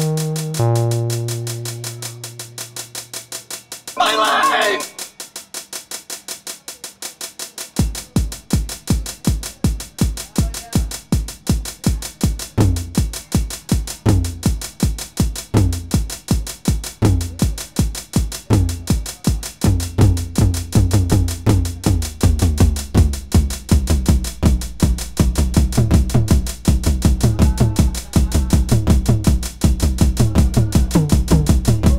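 Electronic dance music from a DJ set: held synth notes fade away over the first few seconds and a short vocal snippet sounds about four seconds in. A fast drum pattern starts about eight seconds in, and a deep bass line joins and grows steadier toward the end.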